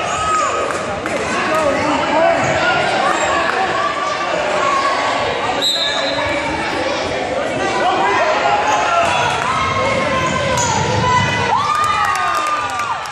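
Basketball game in a gym: many spectators' and players' voices shouting and calling over the court, with the basketball bouncing on the hardwood floor. A short, high referee's whistle blast comes about halfway through.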